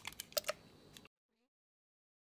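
Two or three light taps in the first half second, then the sound cuts to dead silence.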